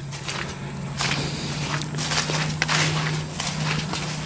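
Footsteps walking over grass and leaf litter, several steps, with a steady low hum underneath.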